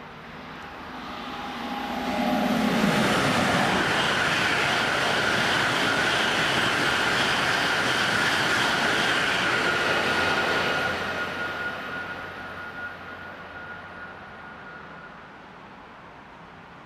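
German ICE high-speed train passing at about 248 km/h: a rising rush as it approaches, about eight seconds of loud, steady roar, then a fade over several seconds with a thin high whine lingering as it recedes.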